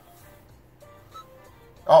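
Faint music: a few soft, short notes at different pitches over a low steady hum, heard inside a car cabin. A man says "oh" at the very end.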